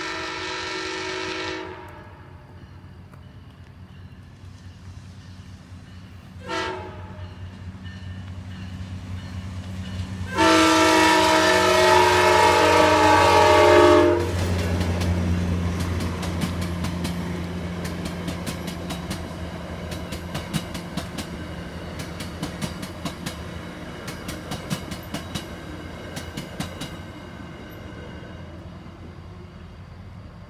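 Nathan K5LA five-chime air horn on a VRE commuter train, the horn the uploader calls bad: a blast that ends about two seconds in, a short toot about six seconds in, then a long, loud blast from about ten to fourteen seconds. The train then passes with a low, steady diesel drone and a run of clickety-clack from the wheels over the rail joints, fading toward the end.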